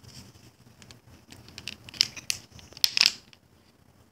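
Thin plastic water bottle crinkling and crackling as it is handled, with a cluster of sharp crackles about two to three seconds in.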